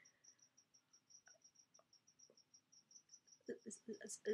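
Near silence with a faint, high-pitched chirp repeating steadily about six times a second; a soft voice starts near the end.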